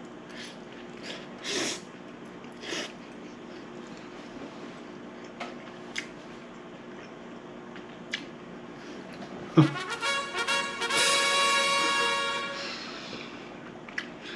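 Two short slurps as a forkful of noodles is eaten, a few faint clicks, then a loud brassy musical sting held for about three seconds near the end.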